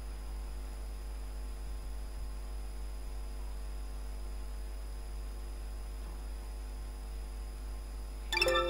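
Steady low electrical hum with faint hiss, unchanging throughout: mains hum picked up in the recording, with nothing else sounding.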